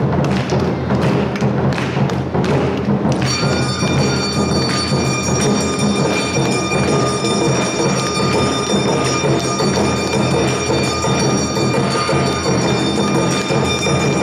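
Awa odori festival band: taiko drums beating a steady rhythm, with a high steady held tone that joins about three seconds in and holds on.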